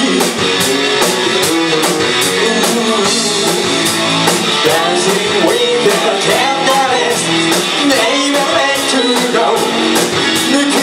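Live rock band playing an instrumental stretch of a song: electric guitar, bass and drum kit, with a steady driving hi-hat beat.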